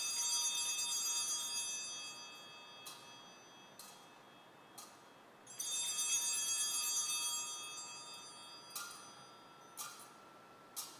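Altar bells rung at the elevation of the chalice after the consecration. There are two long, bright rings about five and a half seconds apart, each dying away slowly, with a few lighter single strikes between and after them.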